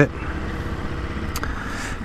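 Ducati Multistrada V2S's 937 cc L-twin idling with a steady low rumble.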